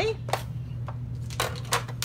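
A few sharp, separate clicks and taps as the plates and metal framelet dies of a Big Shot die-cutting machine are handled and taken apart after a cutting pass.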